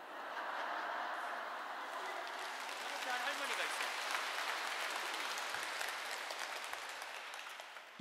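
A large audience laughing and clapping. The applause swells quickly at the start, holds steady, and thins out near the end.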